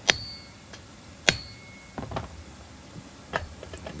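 Hammer smacking a steel nut threaded flush on the flywheel end of a Poulan 2150 chainsaw's crankshaft: two sharp metallic blows about a second and a quarter apart, each with a short ring, to knock the flywheel loose. A few lighter clicks follow as the saw is handled.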